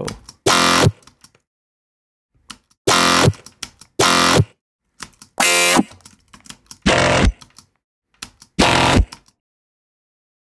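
Resampled Serum synth bass, pitched down 12 semitones in Ableton's warp engine, played back as six short, harsh, buzzy stabs at uneven spacing. Each stab cuts off sharply, with faint ticks in the gaps between them.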